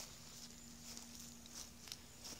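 Faint rustling and light footsteps on grass, with a small click near the start and another near the end, over a faint steady low hum.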